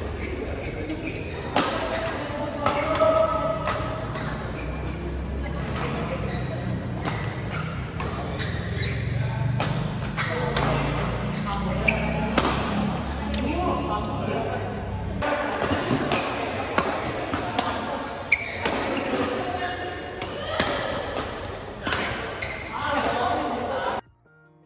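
Badminton rally in a large indoor hall: sharp hits of rackets striking the shuttlecock, coming irregularly about once a second and echoing in the hall, with players' voices around them.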